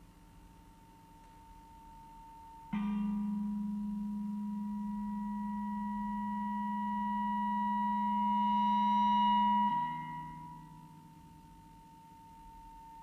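EBow-sustained prepared electric guitar: a 3D-printed arched ring couples two strings, making the tones inharmonic and gong-like. A quiet drone jumps suddenly to a loud sustained tone about three seconds in, with a low note and a bright ringing tone above it. The tone swells slowly, then falls back abruptly to a quieter drone about ten seconds in.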